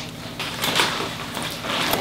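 Rustling and handling noises from a tall Monstera being tied up to a bamboo stake: a few short, scratchy rustles of leaves, stems and tape.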